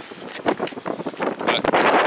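Wind buffeting the camera microphone, an uneven rushing noise that grows much louder in the last half second.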